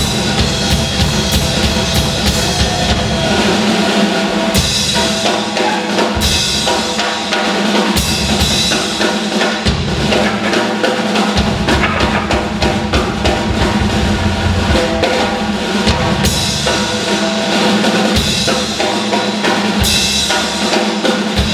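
A drum kit played live in a blues groove, with bass drum, snare and cymbals, over steady held notes from the rest of the band.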